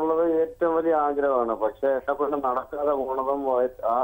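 A caller talking over a telephone line, the voice narrow and thin with nothing above the phone band.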